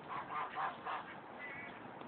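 A few faint, short calls from domestic fowl.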